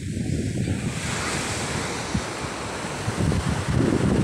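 Ocean surf washing onto a beach, with wind buffeting the microphone.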